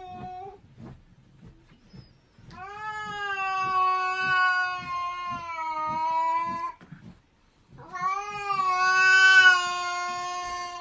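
A domestic cat meowing in long, drawn-out calls. The first, about four seconds long, starts a couple of seconds in; a second starts near the end, and the tail of an earlier call ends just after the start.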